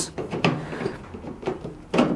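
A 3D-printed plastic duct adapter being pushed and worked into the tight exhaust slot on the back of a K40 laser cutter's sheet-metal case: a few short scrapes and knocks of plastic against metal, the loudest near the end.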